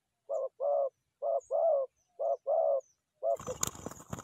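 Spotted dove cooing: three phrases of two notes, a short one then a longer one, about a second apart. Near the end a fourth note is cut into by a noisy flurry of wingbeats as a second bird lands.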